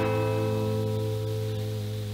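Guitar chord ringing out and slowly fading, with a deep low note held beneath it and no new notes struck; the higher strings die away within the first second.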